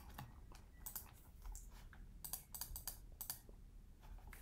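Faint clicking of a computer keyboard and mouse, in several short runs of clicks.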